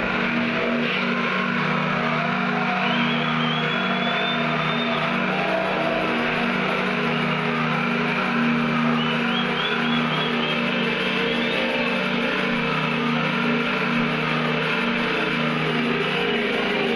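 Electronic music through a club sound system in a passage without a heavy beat: sustained low synth chords under warbling, gliding high synth lines.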